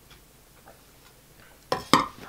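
A drinking tumbler set down, two sharp knocks close together near the end, after a quiet stretch with a few faint small clicks from sipping.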